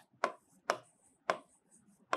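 A marker tip tapping and stroking on a writing board as letters are written: three sharp ticks about half a second apart, each trailing a brief high scratch.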